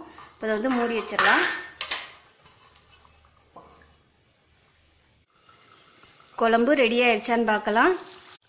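A steel lid and ladle clinking against an aluminium kadai, between two stretches of a voice, with a quiet stretch in the middle.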